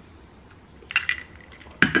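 Ice cubes clinking in a glass of iced coffee about a second in, then a sharp knock as the glass is set down near the end.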